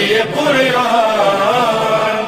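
A male voice sings a devotional Urdu manqabat, drawing out a long wavering, melismatic note.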